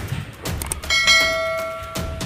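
A single bell-like chime rings out about a second in and slowly fades, over a few dull thuds.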